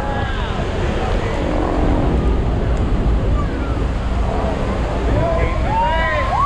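The steady roar of the Horseshoe Falls and its spray, with wind buffeting the microphone aboard a tour boat at the foot of the falls. Passengers' voices and shouts rise over it near the end.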